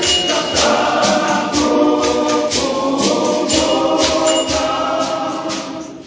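Men's choir singing in harmony, with hand shakers keeping a steady beat about twice a second. The voices fade away near the end.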